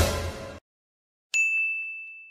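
A single high, bell-like ding sound effect: one sharp strike about a second and a half in, holding one clear tone as it rings out over about a second. Before it, a short rush of sound fades away within the first half-second.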